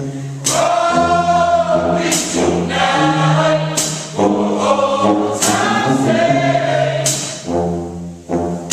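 A marching band's members singing together in harmony, with wavering held notes over steady low ones. A sharp percussive hit comes about every second and a half.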